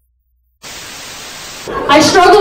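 Silence, then a steady hiss of recording noise that cuts in suddenly about half a second in; a voice starts speaking near the end.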